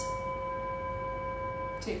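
A bell-like chime ringing on in one steady tone with overtones, which stops as speech begins near the end.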